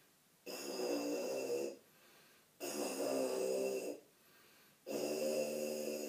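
Lips buzzing into a tuba mouthpiece on its own: three held buzzed notes of a little over a second each, with short gaps between.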